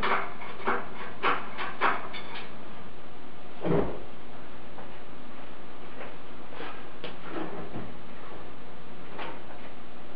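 Scattered light clicks and knocks over a steady hiss, with one heavier thump almost four seconds in: handling noise in a workshop as the hoisted engine is guided and the camera is moved.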